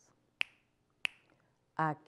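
Two crisp finger snaps about two-thirds of a second apart, keeping time in a pause of a half-sung poem; a woman's voice comes back in near the end.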